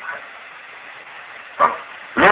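Steady hiss of the recording in a pause between a man's spoken phrases, broken about one and a half seconds in by a single short, sharp vocal sound.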